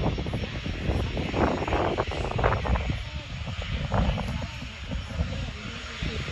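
Propeller aircraft engine running, a rough, uneven rumble, with people talking in the crowd.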